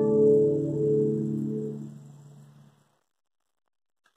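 Seven-string acoustic guitar (violão de sete cordas) letting a final chord ring out, fading steadily and dying away to silence a little under three seconds in.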